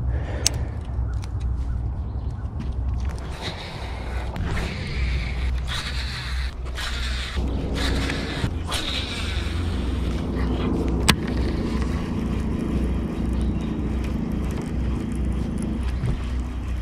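Wind buffeting the camera microphone, a fluttering low rumble, with a steady hum setting in about halfway through. Two sharp clicks, one near the start and one about two-thirds in.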